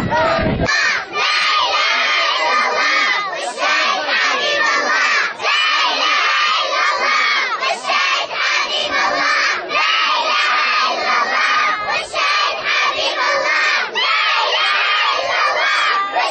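A crowd of children chanting and singing together, many high voices shouting at once without a break. In the first second a deeper chant of men's voices cuts off.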